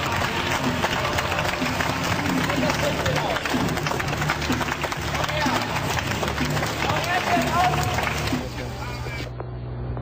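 Voices over music and a dense crowd-like hiss. Near the end the sound turns thinner and muffled, with a steady low hum.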